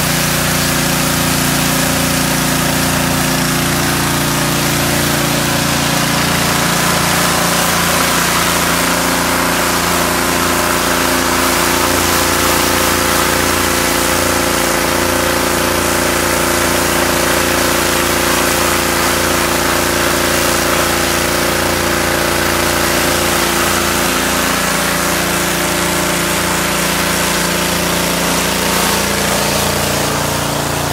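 Pressure washer running steadily: the machine's engine drones continuously under the hiss of the high-pressure water jet striking wooden fence boards.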